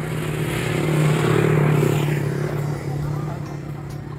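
A motor engine passing close by: its noise swells to a peak between about one and two seconds in, then fades, over a steady low hum.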